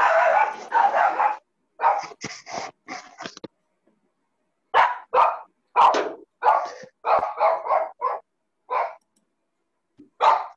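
A dog barking repeatedly in short runs, with a quick string of about ten barks through the second half.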